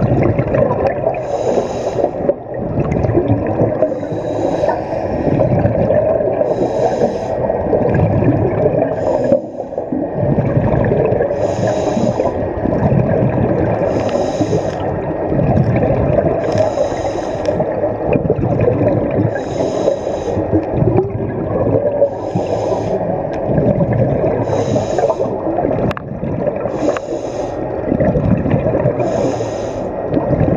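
Scuba regulator breathing underwater: a short hiss about every two and a half seconds over a continuous bubbling rumble of exhaled air.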